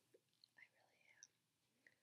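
Near silence: room tone with a few faint, brief small sounds.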